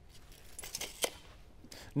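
Faint, light handling sounds: a few small ticks and scratches around the middle, from a pencil marking a wooden framing plate.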